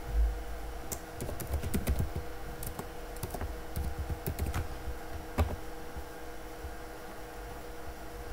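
Computer keyboard keys clicking as a few characters are typed, in short irregular runs, mostly in the first two-thirds, over a faint steady hum.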